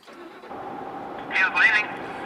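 Steady road and engine noise inside a moving truck's cab, with a short burst of voice about one and a half seconds in.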